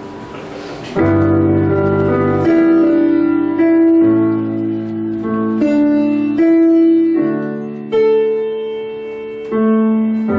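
Solo piano intro played on a Roland digital stage piano: slow sustained chords over bass notes, a new chord struck about every second from about a second in, each ringing on and fading.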